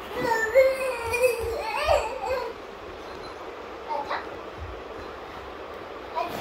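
A toddler's wordless vocalizing: one long call that glides up and down in pitch for about two seconds, then a short cry about four seconds in.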